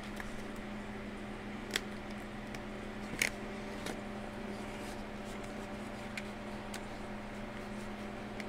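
Paper banknote and small laminated cash envelope being handled, with a few faint crinkles and light ticks, the clearest about two and three seconds in, over a steady low hum.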